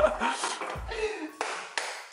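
A frying pan being handled and tossed on a gas stove to flip a pancake: a few soft knocks and a short clatter about halfway through, under low voices.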